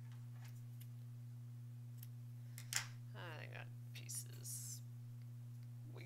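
A few faint light clicks, the sharpest just under three seconds in, followed by a brief wordless vocal sound, over a steady low hum.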